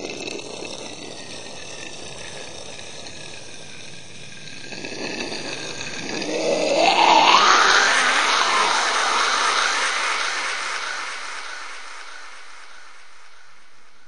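Animated rocket-launch sound effect: a steady rushing noise that swells about five seconds in, with a rising whoosh that peaks a couple of seconds later, then slowly fades away.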